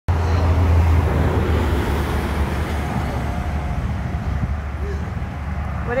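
Steady low engine rumble, loudest in the first second and easing off slightly after.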